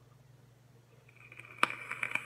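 Electronic cigarette being drawn on: the coil sizzles faintly from about a second in, with a few sharp crackles.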